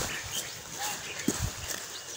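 Footsteps on a muddy dirt road: a few dull thuds over a faint steady hiss.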